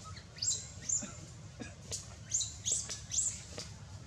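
A run of about six short, high-pitched chirping calls, each sweeping sharply up, spaced unevenly over about three seconds, with a few faint clicks among them.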